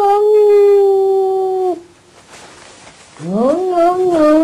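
An animal howling: one long howl that rises quickly in pitch and then holds steady before breaking off just under two seconds in, and a second howl that starts rising near the end and wavers.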